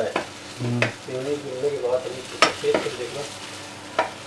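A spatula stirs and scrapes minced kebab mixture frying in a pan on a gas stove, with a steady sizzle and a few sharp knocks of the utensil against the pan. A low voice murmurs briefly about a second in.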